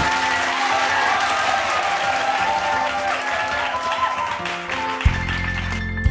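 Applause over the opening notes of a band with piano and violins; about five seconds in the bass and drums come in and the song starts.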